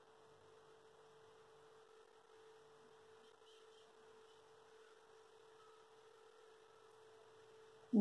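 Faint steady hum at one pitch, unchanging throughout; no knocks or clicks stand out.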